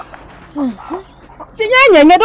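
A few short, quiet animal calls, each falling in pitch, then a loud voice comes in near the end.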